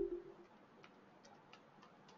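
Faint keyboard keystrokes, a few separate clicks a second, as a password is typed. At the very start the tail of a louder knock fades out with a short low ringing hum.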